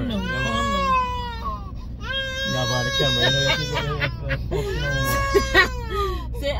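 A high-pitched human voice wailing in three long, drawn-out cries that rise and fall in pitch, like crying, over a steady low hum.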